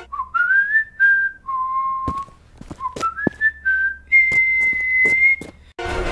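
Someone whistling a short tune of single notes, some sliding upward, ending on one long held high note. A few sharp clicks fall between the notes.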